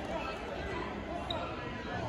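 Indistinct chatter and voices of spectators in a large gymnasium, a steady background murmur with no single voice standing out.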